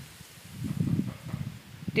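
A woman's voice speaking from a distance across the garden, muffled and indistinct, for about a second in the middle.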